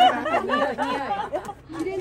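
Speech: people chatting in conversation, voices rising and falling in pitch.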